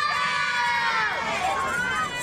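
A group of young children shouting together in one long cheer, many high voices held at once and falling away after about a second and a half.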